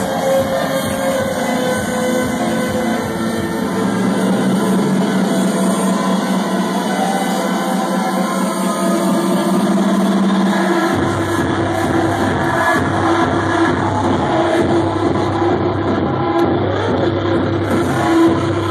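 Loud electronic dance music played over a club sound system. A section without deep bass gives way, about eleven seconds in, to a steady kick drum and bass.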